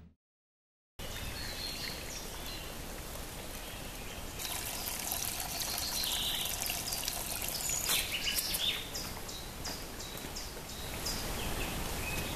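A small forest stream trickling over stones, starting about a second in, with short bird calls joining from about four seconds in.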